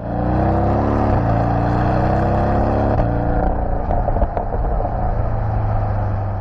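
Porsche 718 Boxster GTS's 2.5-litre turbocharged flat-four engine accelerating hard, its pitch rising with a brief dip about a second in as it shifts up. About three seconds in it comes off the throttle into a rougher, uneven note with a few pops.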